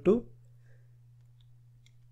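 A voice says a single word, then a pause filled only by a faint steady low hum and a few faint ticks.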